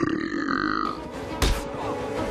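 A digital glitch-static transition effect: a short distorted buzz that cuts off abruptly under a second in, followed by a film's soundtrack with a sharp hit about a second and a half in.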